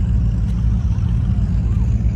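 Wind rumbling on the microphone: a steady, loud low rumble with no clear engine note.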